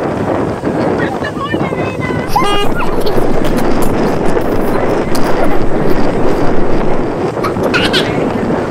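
Wind rushing over the microphone on a moving pontoon boat, with boat and water noise underneath. A brief high-pitched voice cuts in about two and a half seconds in and again near the end.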